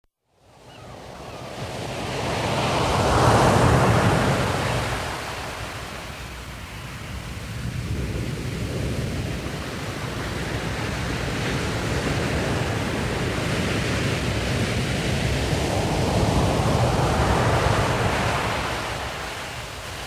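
Ocean surf washing in: a wave swells up over the first few seconds and falls away, then a second slow swell builds toward the end.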